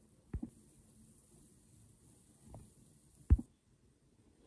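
A few light knocks and clicks of kitchenware, then a sharp, much louder knock a little after three seconds in as a glass saucepan lid is set down on the pot.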